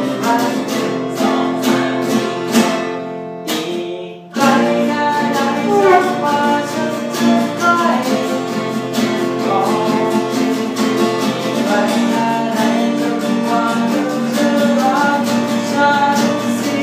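Two acoustic guitars strummed together, with a man singing a Thai pop song over them. The playing thins almost to a stop about four seconds in, then comes back in full with the singing.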